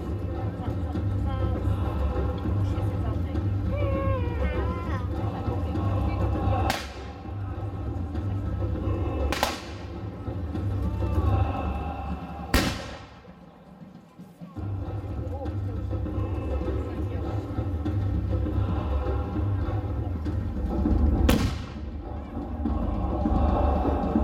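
Four separate black-powder shots, blank charges from replica cannon and guns, each a sharp report, spaced several seconds apart with the third the loudest. Under them runs a steady low rumble.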